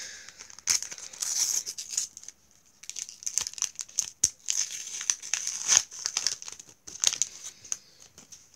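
Sticker packet wrapper being torn open and crinkled by hand, in a run of irregular crackling rustles with a short pause about two and a half seconds in.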